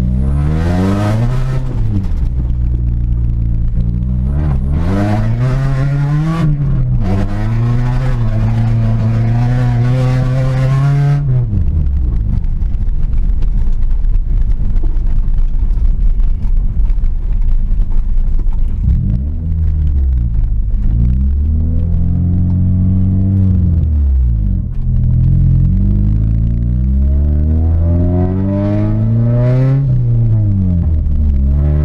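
1992 Honda Prelude's H23A1 2.3-litre four-cylinder engine, heard from inside the cabin, revving hard. Its pitch climbs and drops several times as it runs up through the gears and eases off. A loud rushing noise rides over it for roughly the first ten seconds.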